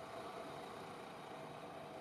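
Faint steady hiss with a faint thin hum.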